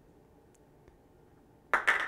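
Near silence: room tone, with a couple of faint ticks in the first second.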